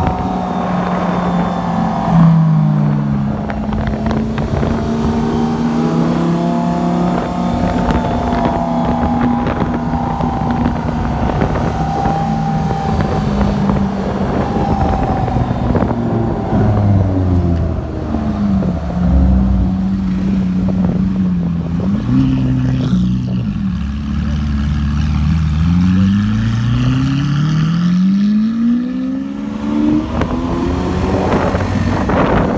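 Car engine running steadily while driving through city traffic, its pitch dipping and rising with throttle and gear changes, then climbing as it accelerates in the last few seconds. Wind buffets the microphone.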